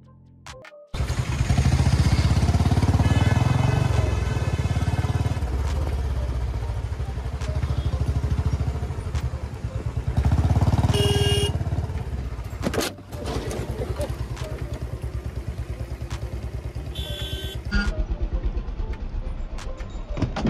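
A Royal Enfield Bullet's single-cylinder engine running at low speed in traffic, its exhaust beat swelling about a second in and again around ten seconds. Car horns honk around eleven seconds and again near seventeen seconds, and there is a single sharp knock near thirteen seconds.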